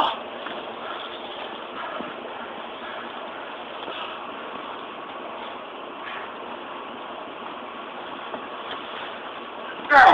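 Steady outdoor background noise, even in level throughout, with no distinct hits or shouts.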